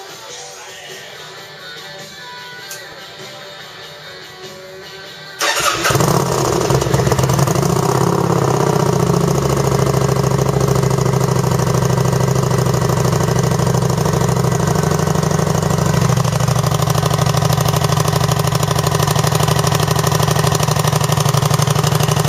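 Kawasaki Vulcan 900 Custom's V-twin engine, its stock exhaust de-baffled (end pipe cut off, holes drilled in the baffle caps), starting about five seconds in and then idling steadily and loudly.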